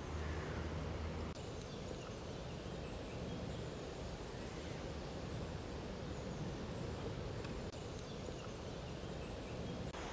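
Faint outdoor ambience: a steady low hiss of background noise, with faint distant bird calls. A low hum stops about a second in.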